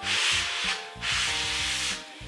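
A rough rubbing, rasping noise, heard twice: a short one at the start and a longer one from about a second in. Soft background music plays underneath.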